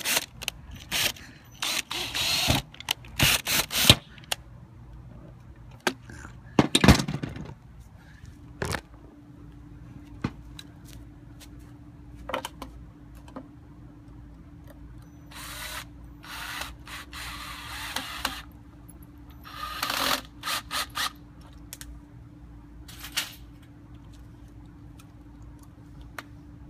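Cordless drill driving self-tapping screws through a wrapped wick into half-inch copper tubing, in several short runs of a second or two. Sharp knocks and clatter come in the first few seconds, and a faint steady hum runs underneath from about eight seconds in.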